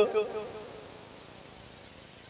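A man's amplified voice through a microphone and loudspeakers, trailing off at the start of a pause with a short echo, then a faint, steady hiss of background noise.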